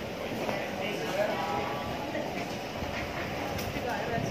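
Busy market crowd: steady background chatter of many shoppers' voices, with no clear words.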